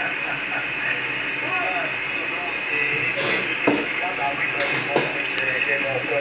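Single-sideband voice received on the 80 m amateur band (3.743 MHz, lower sideband) through a homebuilt QRP transceiver's speaker. Faint, indistinct speech sits under steady band hiss, with a few sharp crackles in the second half.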